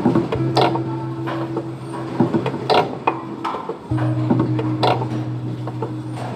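Factory machinery running: a steady motor hum that cuts out a little after two seconds and starts again near four seconds, under repeated sharp mechanical clacks and knocks.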